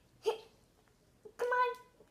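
A young girl's short wordless vocal sounds: a brief blip about a quarter second in, then a longer held voice sound of about half a second near the end.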